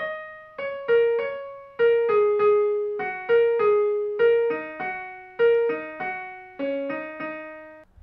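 Digital piano playing a short test song, one note at a time at about two notes a second, each note struck and then dying away; the melody stops shortly before the end. The notes are sent to the piano by the Keysnake strip, so hearing the tune shows the strip is communicating with the piano.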